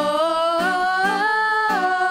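Girls singing a worship song into microphones, holding one long note that steps up in pitch about halfway through and drops back near the end, with acoustic guitar strummed softly underneath.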